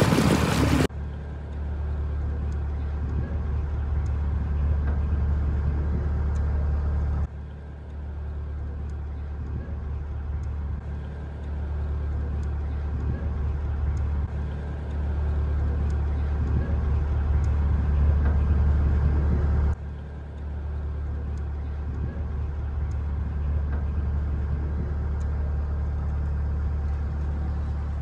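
Narrowboat diesel engine running steadily under way, a low even drone. The level dips briefly twice, about a quarter and two-thirds of the way through.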